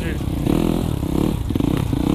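Dirt bike engines, including the rider's Honda CRF125, running at low revs as the bikes crawl along at walking pace in a slow race.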